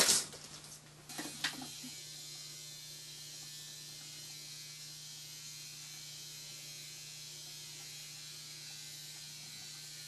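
A sharp knock at the start, then a steady hiss from a small electric motor that runs without change for about nine seconds and cuts off abruptly.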